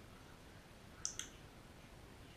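Two sharp, light clicks in quick succession about a second in, over quiet room tone.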